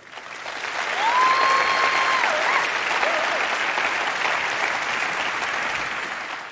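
Audience applause, building over the first second and then holding steady, with one long high cheer from a single voice about a second in.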